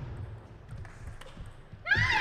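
Table tennis rally: light, scattered clicks of the ball off bats and table. Near the end a sudden high-pitched shout breaks in as the point is won.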